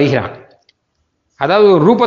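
A man speaking, with a pause of about a second in the middle.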